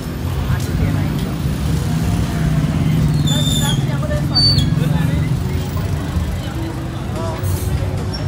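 Busy street ambience: road traffic rumbling past close by, mixed with voices of passers-by and music from roadside bars, with a short high-pitched tone about three seconds in.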